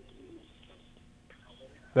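Faint, steady telephone-line hum with a few faint indistinct sounds from the open line. Right at the end a man's voice starts loudly.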